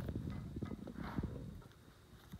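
Quick, irregular soft taps and knocks of fingers pressing small paper squares onto a paper plate on a tabletop, with light paper rustling; the taps thin out near the end.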